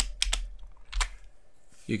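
Computer keyboard keys clicking: a quick cluster of keystrokes, then a single one about a second in, as copied text is pasted into a document.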